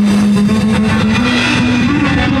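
Rock band playing loud: a drum kit hit hard with cymbals, under one long held guitar note that steps up in pitch near the end.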